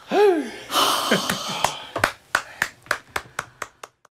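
A short whoop with a pitch that rises and falls, then about a second of loud cheering and shouting, then hands clapping at about five claps a second.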